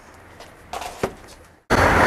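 Handling of a cardboard gift box and its packaged sample materials: faint rustling and one sharp click about a second in. Near the end a loud, steady handling noise starts suddenly.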